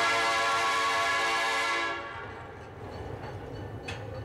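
Train whistle blowing one long note of several tones over a hiss for about two seconds, then dying away into a low rumble.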